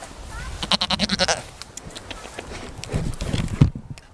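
A goat bleating once, a quavering, rapidly pulsing bleat about a second long, starting about half a second in. Near the end come a few low thumps, the loudest just before the sound cuts off suddenly.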